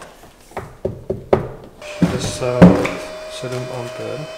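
A few knocks and clicks as a power cable is plugged into the van's 3 kW battery charger. From about two seconds in a steady whine starts and holds as the charger begins charging the lithium battery bank at full current.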